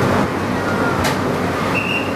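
Penang Hill funicular railcar running with a steady rumble, a sharp click about a second in and a brief high wheel squeal near the end.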